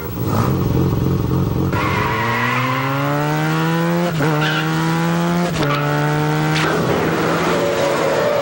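Car engine accelerating hard through the gears. Its pitch climbs steadily and drops back at each upshift, three times, about four, five and a half and six and a half seconds in.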